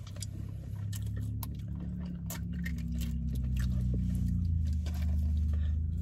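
Close-up chewing and biting of a fast-food sandwich and fries, with crisp clicking mouth sounds, over a long, low hummed "mmm" of enjoyment.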